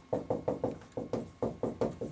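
Dry-erase marker writing capital letters on a whiteboard: a quick run of sharp taps and short strokes, about six a second.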